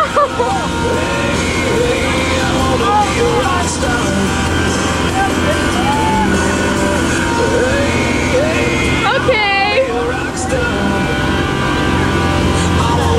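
Towing boat's engine running steadily under way, a constant low drone, with a song and a singing voice playing over it; the voice is strongest about nine and a half seconds in.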